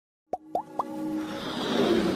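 Electronic logo-intro sound effects: three quick rising plops about a quarter second apart, then a whoosh that swells louder.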